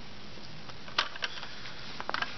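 Plastic wire connectors being handled and pushed onto a circuit board's pin headers: a sharp click about a second in and a smaller one just after, with a few faint ticks, over a steady background hiss.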